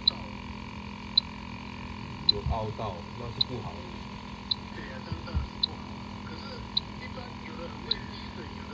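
Electronic refrigerant leak detector ticking with short high beeps about once a second at an even rate as its probe sniffs the mini split's brass service valves. The rate never speeds up, the detector's idle rhythm: no R410A leak picked up. A steady hum runs underneath.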